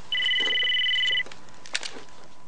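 Mobile phone ringing: an electronic ring of two steady high tones sounding together for about a second, then stopping. A short click follows near the end.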